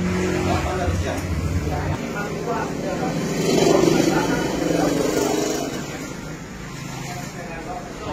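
A motor vehicle passing by, growing louder to a peak about midway and then fading, over indistinct voices.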